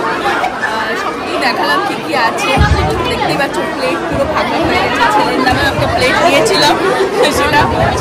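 Many people talking at once in a large hall: a dense babble of overlapping conversation, with no single voice standing out.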